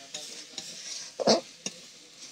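A spatula scraping and knocking against a metal kadai while spice paste sizzles in hot oil, with a steady frying hiss underneath. The loudest scrape comes a little past halfway, followed by a short knock.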